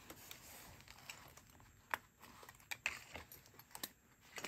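Faint handling sounds of a pin-covered denim holder being turned over on a tabletop: fabric rustling with a few light clicks from the metal pins and pin backs, the sharpest about two seconds in.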